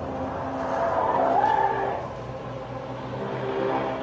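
Tesla Cybertruck being driven hard through a corner, its tyres squealing over road noise, loudest around the middle.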